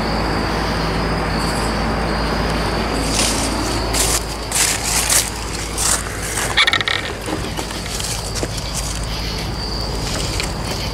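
Night insects trilling steadily in one high, even tone over a low steady hum. In the middle comes a few seconds of rustling, crunching steps.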